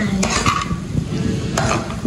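A metal slotted spatula scraping and stirring sweet corn kernels and cheese cubes around a kadai, with a light sizzle of frying underneath.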